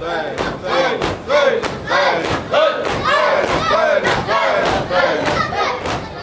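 Crowd of Shia mourners doing matam: voices chanting loudly together over a steady, quick beat of open hands slapping on chests.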